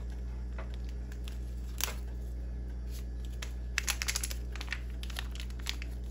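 Foil seasoning packet crinkling as it is handled: scattered sharp crackles, with a quick run of them about four seconds in, over a steady low hum.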